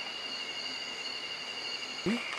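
Night insects chirring steadily in a continuous high-pitched drone.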